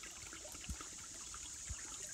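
Shallow creek trickling and bubbling over and between rocks, with a steady high-pitched buzz of katydids singing behind it.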